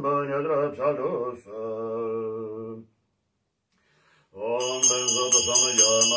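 A man's voice chanting Tibetan liturgy, ending on a long held note; after a pause of over a second the chant resumes, joined by a Tibetan ritual hand bell (drilbu) ringing in a steady pulse of about three strokes a second.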